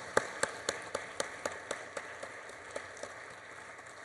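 Brief, light applause: one clapper stands out with steady claps about four a second over a faint scatter of others, dying away near the end.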